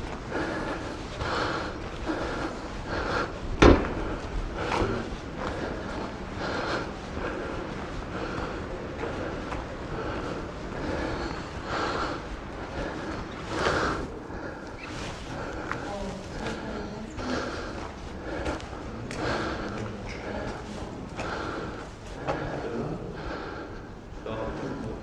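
A man breathing hard, out of breath, close to the microphone while walking, with regular footsteps on stone paving. One loud knock about four seconds in.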